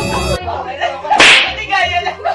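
A single sharp, loud crack a little over a second in, short and hissy, with women's voices and laughter around it.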